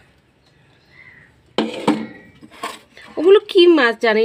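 A person speaking in short phrases after a second and a half of quiet, with a light clink of a steel plate being handled.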